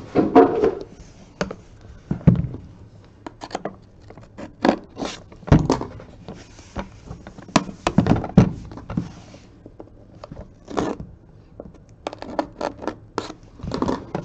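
Hard-shell card briefcase with a metal frame being slid out of its cardboard box and handled, giving a run of irregular knocks, clicks and scrapes.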